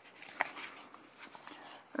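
A page of a hand-held art journal being turned: a faint paper rustle, with a light click about half a second in.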